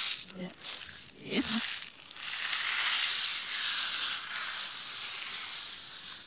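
Dried white beans scraping and rattling across a laminate floor as a hand sweeps through them, played backwards. After a couple of seconds of scattered rattles and a brief voice, there is a steady hiss of sliding beans that fades at the end.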